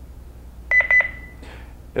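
Honeywell Lynx Touch L5100 alarm panel beeping a quick run of short high beeps, the last held a little longer, about two-thirds of a second in. The beeps acknowledge a transmission from the Honeywell 5814 door/window sensor: in auto-enroll mode the panel has just picked up and learned the sensor's serial number.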